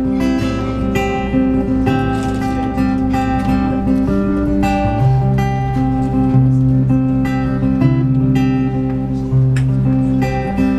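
Acoustic guitar strumming a slow chord progression, played live: the instrumental intro of a country ballad. The bass note shifts lower about halfway through.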